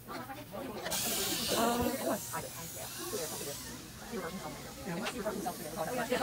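Dental cleaning equipment hissing in a child's mouth during a teeth cleaning. The hiss starts suddenly about a second in and stops after roughly three seconds, with voices in the background.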